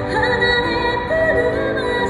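A woman singing live into a handheld microphone, holding and bending long notes with vibrato over musical accompaniment.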